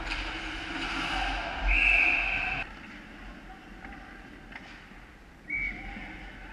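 Referee's whistle blown twice over ice-rink ambience: a steady blast of about a second two seconds in, and a short one near the end.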